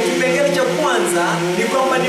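A man speaking Kiswahili, interpreting an English talk, over a steady low hum.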